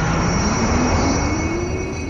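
Intro logo sound effect: a loud, noisy rumble carrying several steady high ringing tones, with a lower tone that slowly rises in pitch. It begins to fade near the end.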